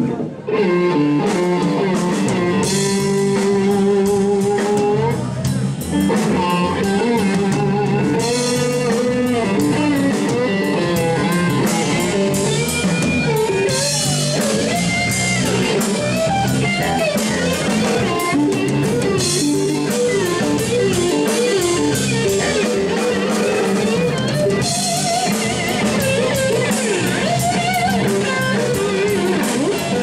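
Live blues-rock band in an instrumental break: an electric guitar leads with gliding, bending notes over bass guitar and drum kit. Cymbals wash in every five or six seconds.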